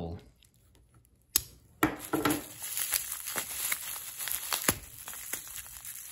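A sharp click about one and a half seconds in, then another, followed by the steady crinkling and crackling of plastic bubble wrap being pulled open by hand.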